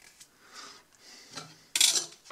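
Plastic tub being handled: faint rustling, then a loud, short scraping rub near the end.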